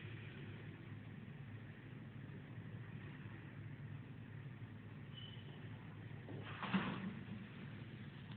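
Quiet room tone with a steady low hum, and one short noise about six and a half seconds in.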